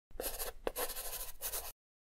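Gritty, scratchy footfalls of a runner on sand, in uneven bursts with one sharp click, cutting off abruptly.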